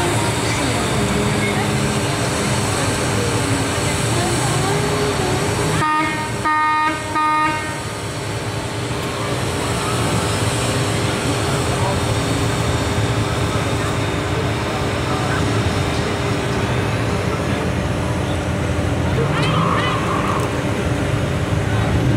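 A vehicle horn honks twice in quick succession about six seconds in, over the steady running of slow-moving vehicles.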